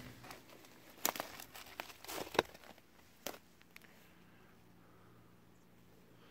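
Footsteps crunching on loose rock and scree: a handful of irregular crunches and clicks in the first half, then only faint background hiss from about four seconds in.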